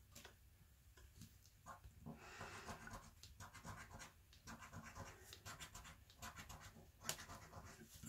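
A coin scraping the scratch-off coating from the panels of a lottery scratchcard in faint, irregular short strokes.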